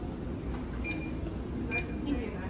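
Two short electronic beeps about a second apart, over the steady hum and murmur of a busy airport terminal.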